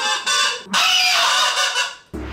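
A multi-horn party mouth horn honking in three squawking blasts, the last lasting over a second, as the wearer laughs out through it.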